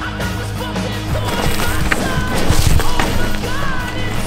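Music mixed with a Banshee Rune freeride mountain bike's trail noise: tyres rolling and skidding over dirt and dry leaves, with knocks and rattles from the bike. The riding noise gets louder from about two seconds in.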